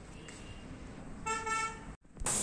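A vehicle horn honks twice in quick succession near the end, a short steady pitched toot over faint outdoor background.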